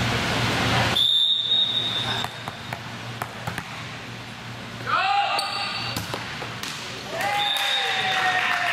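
Indoor volleyball rally in a reverberant gym: a referee's whistle blows once for about a second, about a second in. Sharp knocks of the ball being struck and hitting the floor follow, with players' shouts around five seconds in and again near the end.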